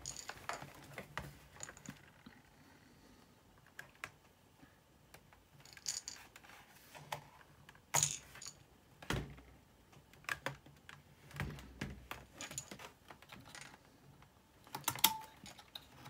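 Scattered clicks and knocks of a Dell Inspiron N5110 laptop's plastic case being handled, shifted on a desk and worked on with a screwdriver. The sharpest knocks come about 8 and 9 seconds in, with a quick cluster of clicks near the end.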